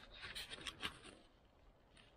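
Faint handling noise: a few light clicks and rubs in the first second, from a hand moving a rubber disc on a metal ice-auger extension shaft.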